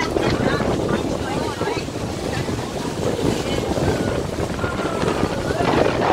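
Wind buffeting the microphone on the open deck of a moving boat, over the steady rush of water along the hull. People are talking underneath it.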